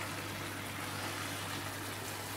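Chicken and Brussels sprouts cooking in a honey caramel sauce in a pan, a steady, even sizzling hiss, with a low hum underneath.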